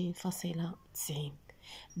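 Speech only: a woman talking, with a short pause near the end.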